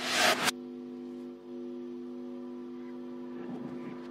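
Song played backwards: a quiet, sustained electric guitar chord held steady, opening with a short noisy swell that cuts off abruptly about half a second in.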